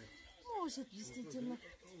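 A person's voice, quiet and without clear words, gliding up and down in pitch for about a second in the middle.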